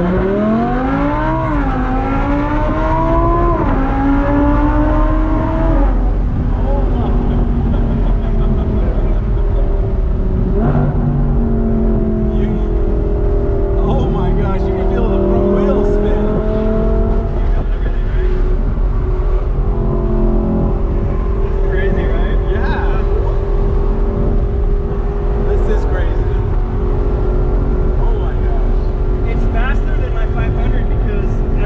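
Audi R8's V10 engine at full throttle, heard from inside the cabin. It climbs in pitch three times with quick upshifts in between, then eases off after about six seconds to a steady, lower cruising note.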